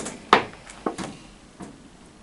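Clear plastic blister packaging of a trading-card box clicking and crackling as it is handled and pried open: a few sharp clicks, the loudest about a third of a second in.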